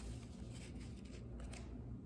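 Faint rustling and a few light taps of construction paper being handled, as a small paper square is placed and pressed down onto a sheet, over a low steady room hum.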